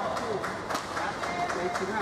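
Footsteps and sharp clicks on a badminton court, irregular and several a second, over voices in the hall.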